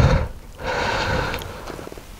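A man breathing hard close to the microphone: a loud breath right at the start, then a longer, noisy breath from about half a second in.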